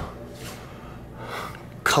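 A man's short, soft breath between phrases of speech, over low room tone, with his next word starting right at the end.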